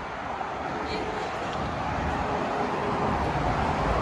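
Steady traffic noise from a busy multi-lane highway below, a continuous wash of passing vehicles that slowly grows louder, with a low rumble underneath.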